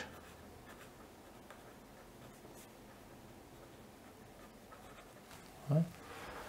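Pencil writing on paper: quiet scratching strokes as a short phrase is written out.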